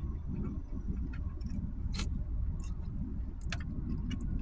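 A metal spoon clinking and scraping in a plastic soup cup: a few sharp clicks, the last ones as the spoon stirs near the end, over a steady low rumble inside a car.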